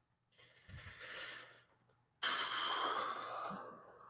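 A man breathing heavily close to the microphone: two long breaths, the second louder, a tired sigh.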